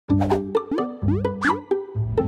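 Cheerful animated-intro jingle: short, bouncy pitched notes with several quick upward pitch slides as sound effects.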